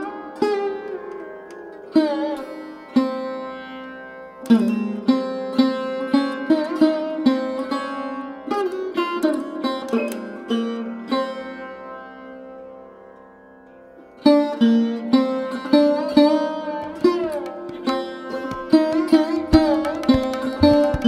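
Background instrumental music: a plucked string instrument playing notes that bend in pitch over a steady drone. It thins out to a lull past the middle and comes back with quicker, denser plucking about two-thirds of the way in.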